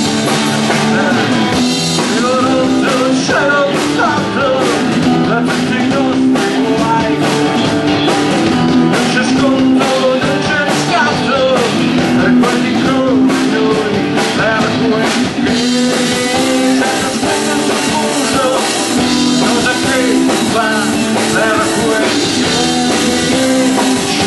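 Live rock band playing, with electric guitars over a drum kit. A lead line bends and wavers in pitch through roughly the first fifteen seconds, then the texture eases a little.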